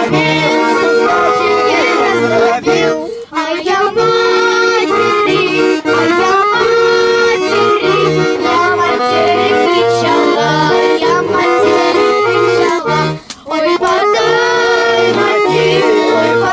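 Button accordion playing a tune over a steady rhythmic bass, with voices singing along. The music breaks off briefly about three seconds in and again about thirteen seconds in.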